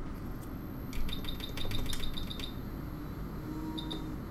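A quick run of about ten short, high electronic beeps from bench electronics, starting about a second in, with two more beeps near the end. A faint high whine sits underneath.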